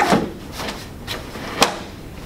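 A bassinet's underside bracket being pulled and clicking free, releasing the side walls so they can collapse: a clunk at the start and one sharp click about one and a half seconds in.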